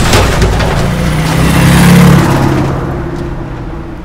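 A truck engine revs and then fades away.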